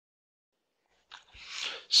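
Dead silence for about a second, then a faint low knock and a sharp in-breath through the mouth, growing louder, just before a man starts speaking.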